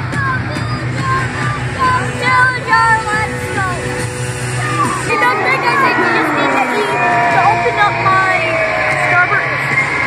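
Arena crowd shouting and whooping over music played through the arena's PA, loud throughout; the crowd noise grows denser about halfway through.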